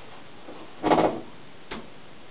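Handling noise at the microscope: a single knock about a second in, then a short click near the end.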